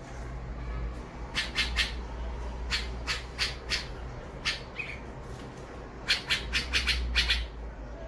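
Bulbul fledglings calling for food: harsh, short squawks in quick runs, about three, then four, then a single call, then a longer run of about seven near the end.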